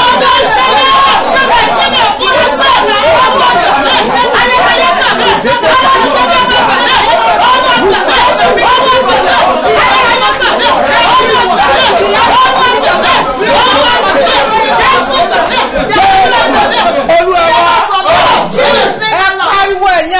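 Several voices praying aloud at once, loud and fervent, overlapping into a continuous shouted babble with no single clear speaker.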